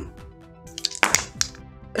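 Dice rattling and clattering into a wooden dice tray, a quick cluster of clicks about a second in, over soft background music.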